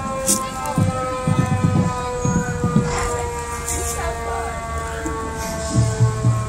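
A siren sounding one long, slowly falling wail throughout, most likely from the fire engines approaching up the street, with voices underneath.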